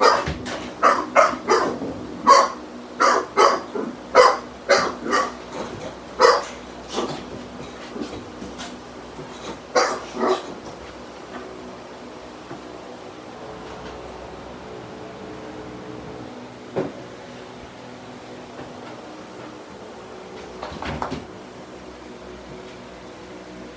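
American bulldog giving a run of short barks, about one or two a second, for the first ten seconds or so, then falling quiet. A steady low hum runs underneath, with a single knock later on and a brief scuffle near the end.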